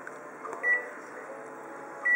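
Colour photocopier touchscreen giving one short, high key-press beep about half a second in, over a faint steady hum.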